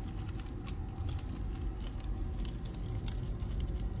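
Soft crinkling and small irregular ticks of a thin plastic bag being handled as powder is tipped from it into a plastic digital spoon scale.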